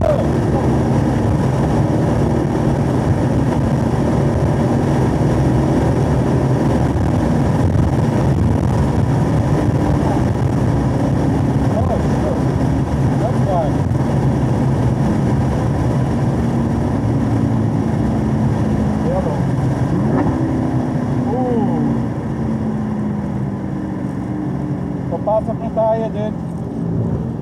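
Camaro SS 1LE's V8 engine heard from inside the cabin, pulling steadily at high revs in fourth gear at close to 100 mph. In the last few seconds the engine note drops and gets quieter as the car brakes and shifts down to third.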